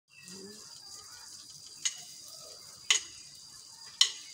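Two sharp clicks of drumsticks about a second apart, over a steady hiss, just before a drum kit starts playing.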